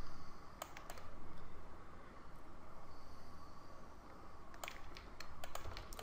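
Scattered clicks of a computer keyboard and mouse: two near the start, then a quick run of several near the end, over a faint steady low hum.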